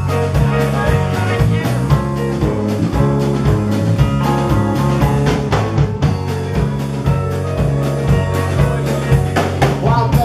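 Rock band music: electric guitar over bass and drum kit, keeping a steady beat throughout.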